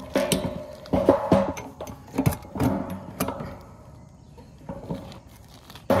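Metal satellite dish assembly knocking and rattling as it is worked off its mounting mast, a run of clanks and scrapes in the first few seconds that then die down.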